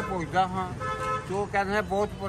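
A vehicle horn sounding a steady, held tone in the street, over a man talking.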